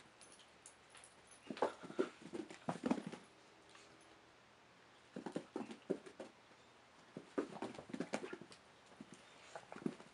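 Deer fawns' hooves tapping and thudding on a carpeted floor and a blanket as they jump and buck, in four short bursts of quick taps with pauses between.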